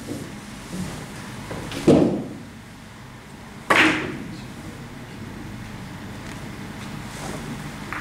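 Three-cushion carom billiard shot: a dull knock about two seconds in, then a sharp, ringing click of billiard balls striking near four seconds, with a faint click near the end.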